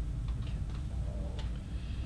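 Steady low room hum with a few faint, unevenly spaced clicks and taps, the clearest about one and a half seconds in.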